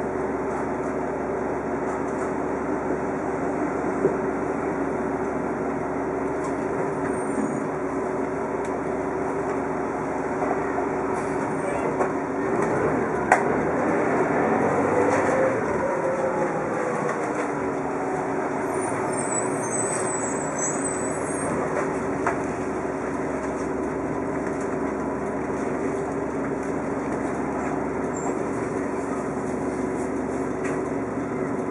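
Orion V transit bus heard from inside the cabin: steady engine and drivetrain hum while riding. Partway through, the engine note rises and then falls back. There are a couple of sharp knocks or rattles.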